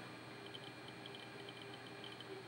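Faint, light ticks of a small allen wrench turning in the clamp screw of a QAD integrated arrow rest, loosening the clamp, over quiet room tone.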